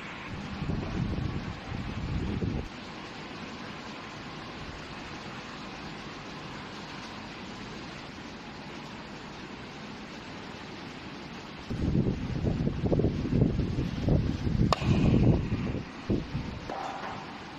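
WDW-B20T electronic universal testing machine running a slow three-point bend test on a foam specimen, with a steady hum throughout. Louder low rumbling comes at the start and again from about twelve seconds in, and there is one sharp click about fifteen seconds in.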